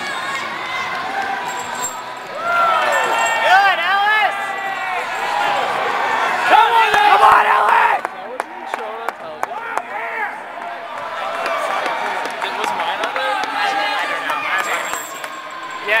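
Overlapping voices and calls of several people in a large hall, with a run of sharp clicks and knocks about halfway through.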